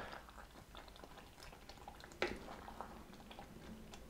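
Faint wet scooping of thick beans with a wooden spoon from an enamel pot into a bowl: soft small plops and scrapes, with a light knock about two seconds in.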